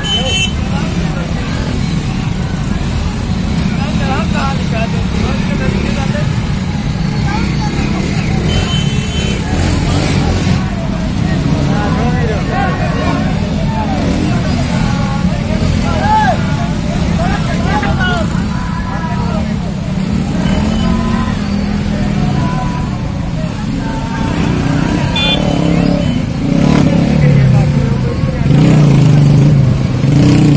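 Many commuter motorcycles running at low speed as they crawl past close by, a steady engine rumble that gets louder near the end. People's voices call out over the engines.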